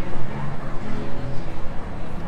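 Busy city street ambience: indistinct voices of passers-by with some music mixed in, over a steady low rumble.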